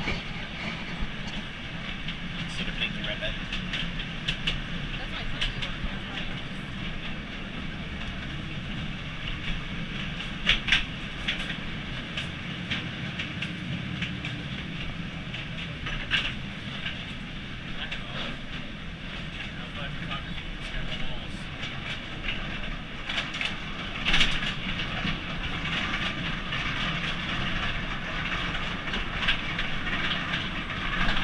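Underground mine tour train running through a rock tunnel, heard from on board: a steady running noise from the cars on the track, with sharp clicks from the wheels on the rails about 11, 16 and 24 seconds in.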